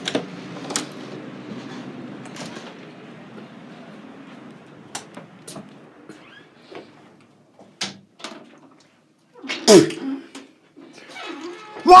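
Rustling handling noise and scattered light knocks and clicks from a camera being carried around. About ten seconds in comes one short, loud cry with a bending pitch.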